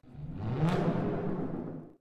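Short logo sting on the closing card: a low tone sweeps upward into a bright, cymbal-like hit under a second in, then rings on and fades out.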